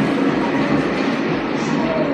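Steady background din of a busy airport restaurant: a dense murmur of distant voices over constant room noise, with no single clear sound standing out.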